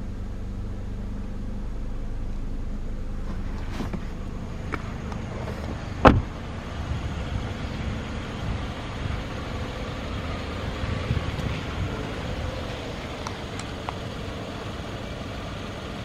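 Toyota Corolla Altis engine idling steadily, with one loud thump about six seconds in.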